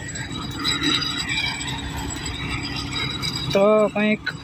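Tractor-driven groundnut thresher running steadily, a continuous mechanical hum and rattle.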